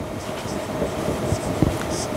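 Marker strokes scratching on a whiteboard over a steady background hiss with a faint hum.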